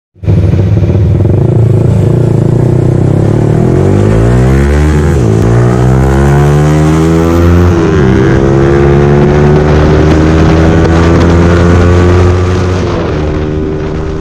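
Yamaha R15 V3's single-cylinder engine through an aftermarket R9 Alpha exhaust, accelerating hard through the gears. The pitch climbs, drops at two upshifts about five and eight seconds in, climbs slowly again, then falls away as the throttle closes near the end.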